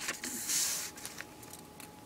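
A sheet of paper being folded in half and creased by hand: a brief rustle about half a second in, then faint handling sounds.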